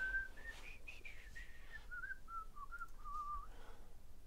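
A person whistling a short tune: a string of clear notes that climbs at first, then drifts down in pitch and stops about half a second before the end.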